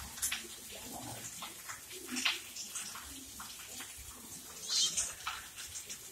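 Two tabby cats wrestling on a plastic-bristle doormat: irregular scratching and scuffling of claws and bodies on the mat. A louder, higher rasp comes about five seconds in.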